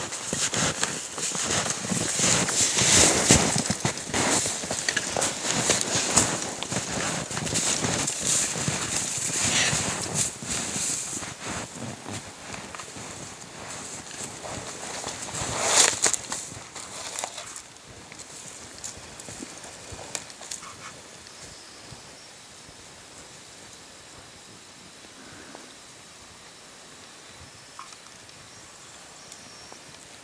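Footsteps crunching and rustling through deep snow on improvised snowshoes of alder sticks and spruce boughs, in a rapid uneven run of steps. A single loud crunch comes about sixteen seconds in, after which the steps grow faint.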